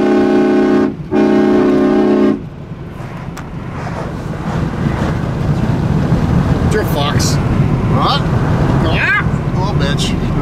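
A vehicle horn honks twice, the first blast about a second long and the second about a second and a half, both steady and loud. After that comes the steady engine and road noise of a pickup truck heard from inside the cab.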